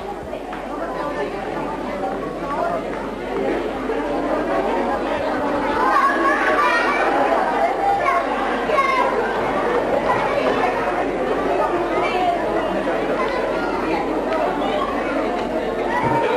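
Many overlapping voices chattering in a large hall, with no one voice standing out; the hubbub grows louder a few seconds in.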